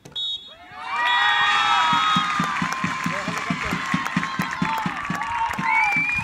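A short referee's whistle blast, then from about a second in, high-pitched shouting and cheering from the players, with rhythmic clapping about four beats a second underneath.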